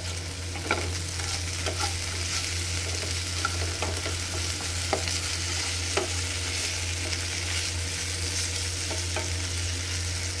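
Potato and pointed gourd (parwal) pieces sizzling in oil in a non-stick frying pan while a spatula stirs them, with scattered light scrapes and clicks of the spatula against the pan. A steady low hum runs underneath.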